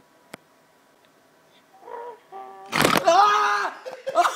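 A quiet stretch with a single click, then a sudden loud jolt near the microphone and a loud, high-pitched scream lasting under a second, about three seconds in.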